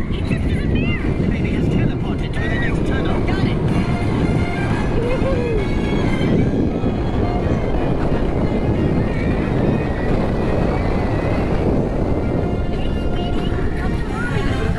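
Steel roller coaster train running at speed, heard from the front row: a steady loud rumble of the wheels on the track and rushing air. Riders' voices and shrieks rise above it briefly near the start, about five seconds in and near the end.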